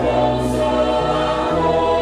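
Mixed church choir singing a hymn, with held notes over a steady low accompaniment whose bass notes change a couple of times.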